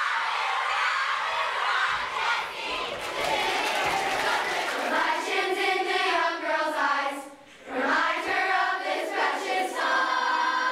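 A crowd of girls cheering and screaming, which gives way about halfway through to a large group of girls singing together, with a short break in the singing about three-quarters of the way in.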